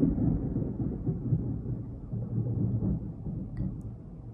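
Thunder from a storm outside, a low rolling rumble that fades gradually over a few seconds.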